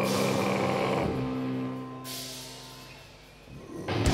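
Metalcore band playing live: a held chord rings out and fades away over a couple of seconds, then a quick rising swell and the full band comes back in loudly right at the end.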